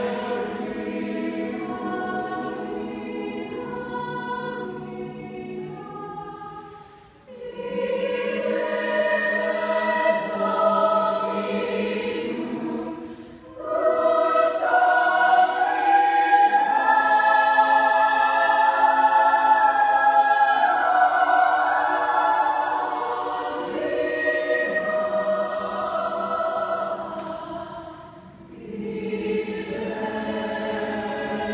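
Mixed-voice high school choir singing a cappella. The phrases break off briefly a quarter of the way in, near the middle and near the end, and the loudest passage is a long held phrase in the middle.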